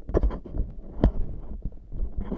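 Handling noise on a GoPro camera's microphone: hands gripping and rubbing the camera, with dull low rumbling and two sharper knocks about a second apart.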